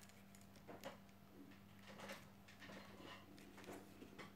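Near silence: a low steady hum with a few faint light taps and rustles as hands handle a woven newspaper-tube candle holder and dab glue into it.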